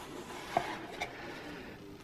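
Faint handling of a small card box as its flip-top lid is lifted open, with two soft clicks about half a second and a second in.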